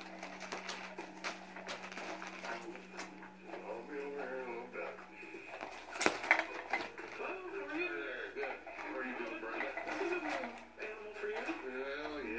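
Indistinct voices in the room throughout, over scattered clicks, scratches and rustles of a cat pawing at a motorised toy under a fabric cover. A steady low hum runs through the first half and stops about five seconds in. A sharp knock comes about six seconds in as the cat pounces on the toy.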